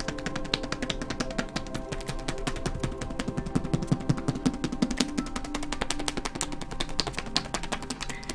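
Hacking massage: the edges of both hands striking rapidly and alternately on an oiled bare back, a fast, even patter of slaps over soft background music with steady held tones.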